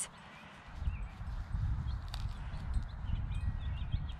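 A hand dandelion weeder being pushed and levered into lawn soil to dig out a dandelion with a stubborn sideways root: irregular low thuds and scraping of soil and turf, starting about a second in.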